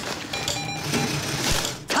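ATM cash dispenser whirring and rattling as it counts out and pushes out banknotes, with a short louder rush near the end.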